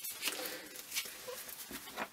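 Paper and ephemera rustling and being handled as small journal bits are gathered up, in a few short soft strokes near the start and about a second in.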